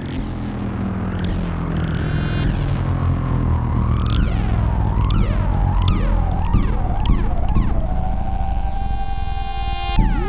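Serge Paperface modular synthesizer (1978) playing an improvised patch: a low, steady drone with a higher tone that warbles up and down in pitch through the middle, then settles into one steady held note near the end, with a few sharp clicks along the way.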